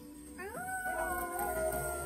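A howl glides up in pitch about half a second in and is then held, with film score music underneath.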